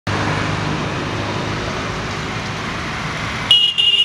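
Steady road traffic noise with a low engine hum, then two short high-pitched vehicle horn toots about three and a half seconds in.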